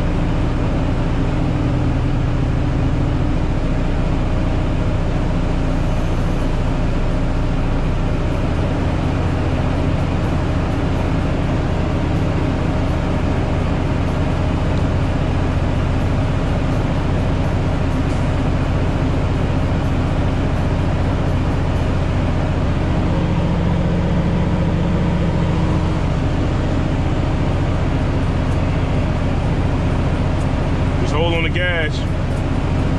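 Diesel engine of a 1999 Freightliner Century Class semi-truck running steadily, heard from inside the cab. The fuel system has just been refilled after a fuel water separator change, and the engine needs throttle to hold fuel pressure.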